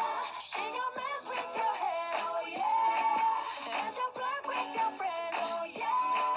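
Music: a song with a sung melody whose phrase ends on a long held note, coming round about every three seconds.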